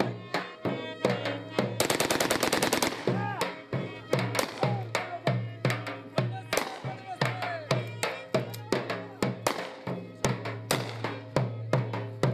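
Dhol drum beaten in a steady dance rhythm, with a fast roll of strokes about two seconds in, under a wavering melody over a steady low drone: live Balochi wedding dance music.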